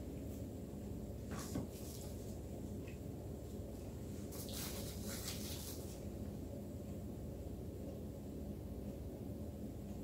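Faint handling sounds at a worktable: a couple of light knocks about a second and a half in and a brief rustle around five seconds in, over a steady low hum.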